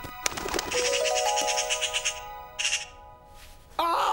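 Cartoon sparkle sound effect: a glittering shimmer over a rising run of held chime-like notes, then a second short twinkle about two and a half seconds in.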